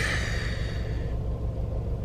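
Low steady rumble of a car's idling engine heard inside the cabin, with a breathy sigh over the first second.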